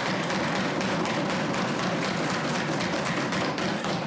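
Legislators applauding in the traditional way by pounding their palms on their wooden desks, a loud, dense clatter of many rapid knocks. It marks the passing of a bill.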